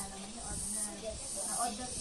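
A woman talking indistinctly, faint and off-microphone, over a steady high-pitched hiss that swells and fades about once a second.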